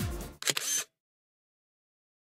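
The end of an electronic music track fades out, then about half a second in a camera-shutter sound effect: a quick sharp click followed by a brief rasp that cuts off abruptly.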